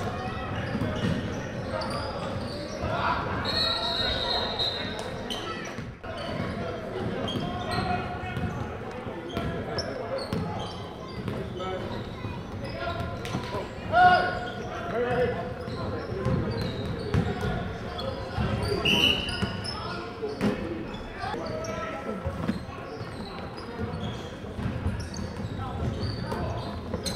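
Basketballs bouncing on a hardwood gym floor during a game, with players' and spectators' voices echoing around a large gym and a sharp louder bang about halfway through.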